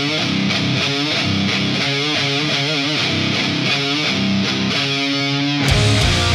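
Heavy metal band playing live: distorted electric guitars carry a passage on their own, with bent and wavering notes. The drums and bass come back in just before the end.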